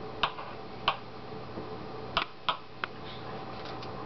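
A kitchen knife knocking on a wooden cutting board while an onion is diced: five short, sparse, irregular knocks, two of them close together a little past halfway.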